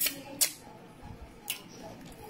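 A person eating pounded yam by hand: wet lip smacks and mouth clicks while chewing, three short sharp clicks at the start, about half a second in and about a second and a half in.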